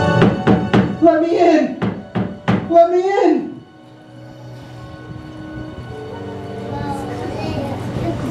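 A quick series of four or five knocks, like a fist on a wooden door, followed by two loud wavering sounds that rise and fall in pitch. Soft, low music then carries on.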